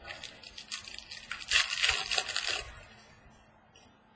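Foil trading-card pack wrapper crinkling as the pack is torn open and handled: small crackles at first, then a dense crinkling burst from about a second and a half in that lasts about a second.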